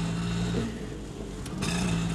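Car engine running at idle, a low steady hum heard from inside the cabin; it dips about half a second in and comes back near the end.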